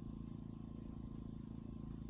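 A faint, steady low hum with a fast, even flutter, and a thin faint tone above it, in a pause between spoken words.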